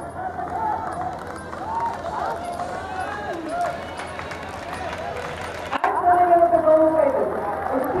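Stadium background of many voices talking and calling out together. About six seconds in, one loud voice calls out in long, drawn-out tones over the chatter.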